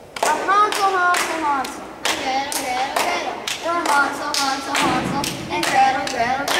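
Two children playing a hand-clapping game, palms slapping together about twice a second while they chant a clapping rhyme.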